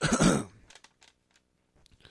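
A man clearing his throat once, a rough rasp of about half a second, followed by a few faint clicks.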